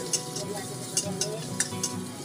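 Metal wok spatula scraping and striking a wok while vegetables are stir-fried over high heat, with about four sharp clanks over the sizzle of frying food.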